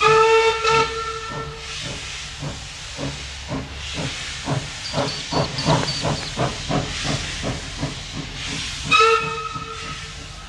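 Steam locomotive C17 971 sounding its whistle for nearly two seconds, then working hard with a run of rhythmic exhaust chuffs, about three a second, under a steady steam hiss. It gives a second, short whistle near the end.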